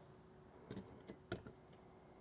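Near silence broken by a few faint light clicks and knocks, the loudest about a second and a third in, as a small electric lead-melting pot is set down on a table.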